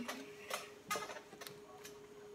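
A few light, sharp clicks, about four in two seconds, over a faint steady hum.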